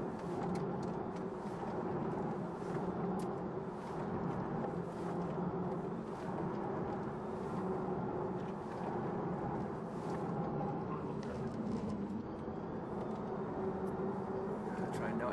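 Electric Mercedes-Benz SLS AMG E-Cell, driven by four electric motor units, under way: a steady hum mixed with tyre and road noise.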